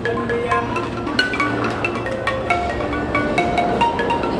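Balafon, a West African wooden-keyed frame xylophone, played with two mallets in quick melodic runs of short struck notes.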